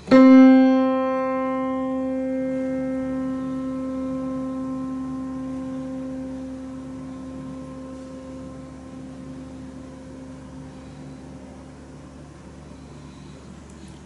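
Middle C struck once on an acoustic grand piano and left to sustain. The note rings and slowly fades: its upper overtones die away within the first few seconds, while the fundamental lingers.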